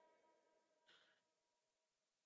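Near silence, with only a very faint, brief sound about a second in.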